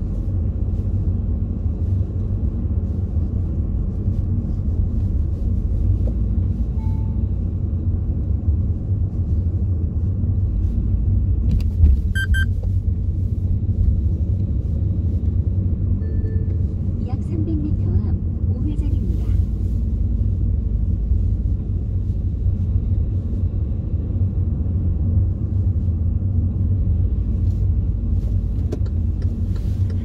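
Car cabin noise while driving through town: a steady low rumble of engine and tyres on the road, with one brief high-pitched tone about twelve seconds in.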